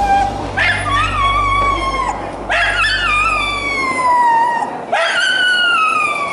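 A dog shut in a plastic pet travel crate howling and whining: three long howls, each falling in pitch, starting about half a second, two and a half seconds and five seconds in.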